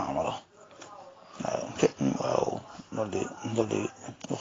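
A man's voice in short phrases with pauses between them, after a brief lull near the start.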